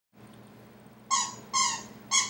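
Two short, high-pitched animal yelps about half a second apart, over a faint low hum.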